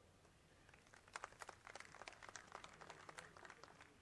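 Faint scattered handclapping from a small audience: many quick, irregular claps starting about a second in and fading out near the end.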